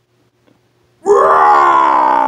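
A person's drawn-out pained vocal cry, voiced for a toy wrestler taking a hit, begins about a second in and slowly falls in pitch.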